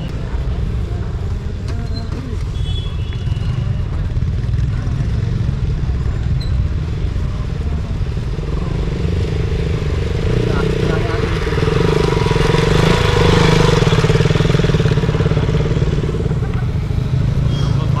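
A motorcycle engine riding up across rough ground, getting louder about halfway through, loudest a few seconds later, then easing off, over a steady low rumble.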